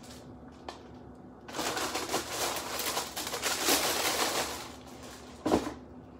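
Paper packaging rustling and crinkling for a few seconds as shoes are unpacked from their box, then a single thump near the end.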